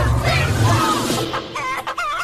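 Dance music with a heavy bass beat and chicken clucks cut in over it, a chicken-sound parody of the song. The beat drops away about a second in, leaving the clucks repeating in rhythm, about three a second.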